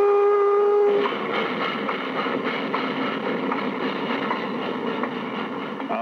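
Steam locomotive whistle sounding one steady chord of several notes for about a second, then the continuous running noise of the train, on an old 1955 recording.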